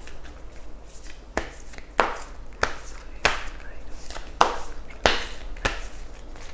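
A deck of oracle cards being shuffled by hand, with a run of about seven sharp card slaps, roughly one every half second, starting about a second and a half in.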